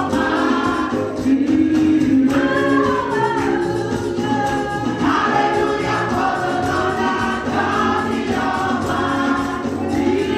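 A women's gospel choir singing into microphones, with several voices together in continuous, melodic phrases.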